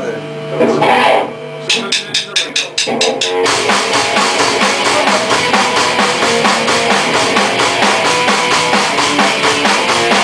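A rock band in a rehearsal room: after a moment of voices and a fast run of sharp ticks, the full band of drum kit, electric guitar and bass guitar starts about three and a half seconds in and plays on steadily.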